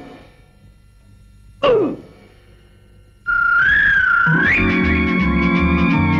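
Cartoon soundtrack: a short sound effect falling in pitch about one and a half seconds in. About three seconds in, a high wavering electronic tone like a theremin comes in, and a second later music with a steady pulsing bass joins it.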